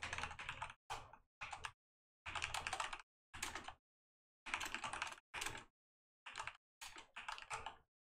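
Typing on a computer keyboard: about ten short runs of rapid keystrokes with brief silent pauses between them.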